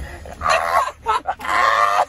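Wordless shouting and strained yells from people grappling in a car seat, in two loud outbursts about a second apart, the second longer.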